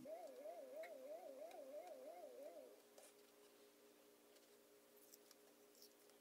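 Near silence with a faint wavering tone that rises and falls about three times a second for the first three seconds, then only a faint steady hum.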